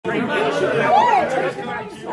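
Indistinct chatter: several voices talking over one another in a large, busy room, with no clear words.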